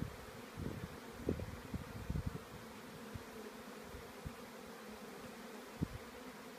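Honeybees buzzing around hive boxes heavily covered with bees: a steady, many-bee hum. Low thumps come through in the first two seconds and once near the end.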